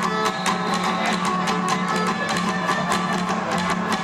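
Tierra Caliente trio of violin, guitar and tamborita drum playing a gusto calentano: the violin carries the melody over steady guitar strumming and regular, even drum strokes.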